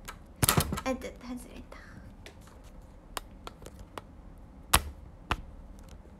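Scattered sharp clicks and taps, consistent with handling of the phone and earphone microphone. A short burst of clicks with a brief bit of voice comes about half a second in, and the loudest single click comes near the end.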